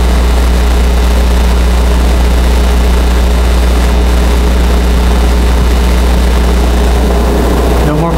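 Steady low hum with an even hiss over it, unchanging throughout: the room's background noise picked up by the lecture microphone while no one speaks.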